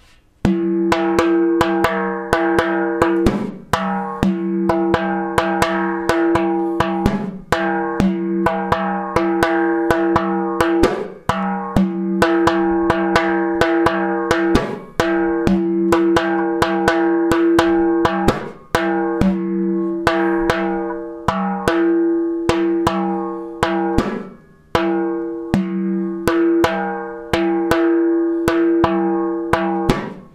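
Hand-played frame drum: a quick repeating rhythm of finger strokes over the drumhead's ringing low tone. The phrase loops about every four seconds.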